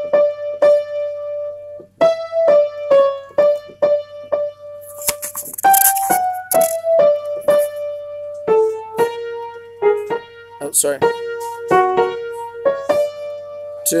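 Piano picking out a choir part's melody one note at a time, about two notes a second, in the treble. The line sits mostly on one repeated note and steps down lower about two-thirds of the way through.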